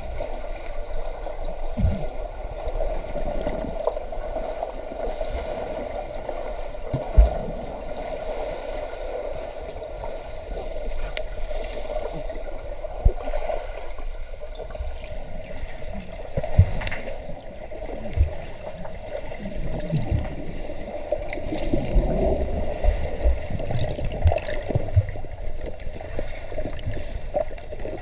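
Pool water heard underwater: muffled bubbling and churning from swimmers in uniform entering and moving through the water, over a steady hum. Scattered dull thumps come through, the strongest about 7 and 13 seconds in, and the churning grows busier near the end as more swimmers plunge in.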